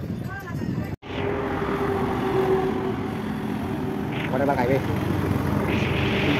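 City road traffic: vehicle engines running with a steady hum and tyre noise, starting at a sudden cut about a second in, with a short stretch of voice partway through.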